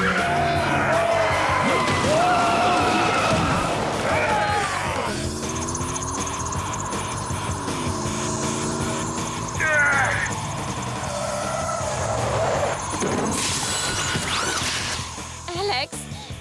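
Cartoon soundtrack mix: dramatic background music over a van's engine and tyre-skid sound effects, with wordless shouts and grunts from the crowd.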